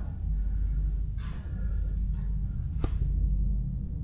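Handling noise from a hand-held action camera: a steady low rumble, a soft swish about a second in and a single sharp click near three seconds in.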